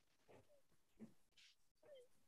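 Near silence, with a few faint short sounds, one about a second in.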